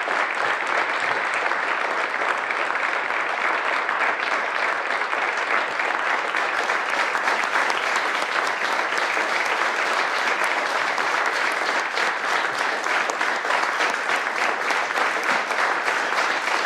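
Sustained applause from a room of several dozen people clapping, steady and unbroken, at the close of a speech.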